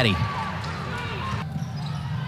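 Basketball game sound on a hardwood court: a ball bouncing over a steady arena background. The background changes abruptly about one and a half seconds in, at an edit cut.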